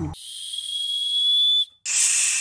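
A single high, steady whistle lasting about a second and a half, then cutting off. Near the end comes a short hushing "shhh".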